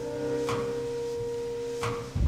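A single sustained, nearly pure note from the live accompaniment, holding steady at one pitch, with two faint short noises over it.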